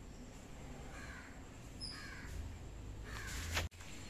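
A bird calling outdoors: three short, slightly falling calls about a second apart, over a low steady background. The sound cuts off abruptly near the end.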